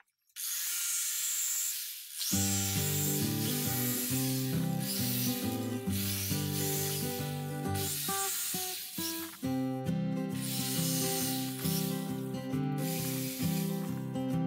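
An electric jigsaw cutting through a board, a steady rasping noise that starts just after the beginning. Background music with a stepping plucked bass line comes in about two seconds in and plays over it.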